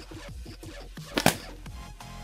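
A balloon pops once, sharply, about a second in, burst by a nail-tipped dart from a PVC-pipe blowgun. Steady background music plays throughout.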